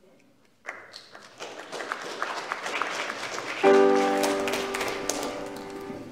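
Congregation applauding, the clapping starting about a second in and building. A little past halfway a piano chord comes in and rings on, slowly fading, under the last of the clapping.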